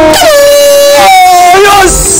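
Loud horn-like tones: one held note, then a higher held note about a second in.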